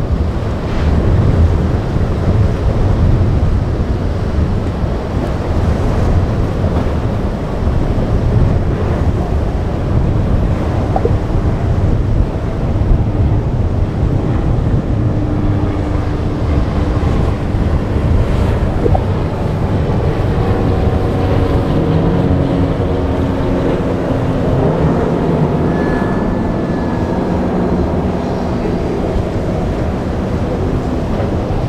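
Wind buffeting the microphone over breaking surf. From about halfway through, the drone of a boat's outboard engines comes through faintly, its pitch rising and falling.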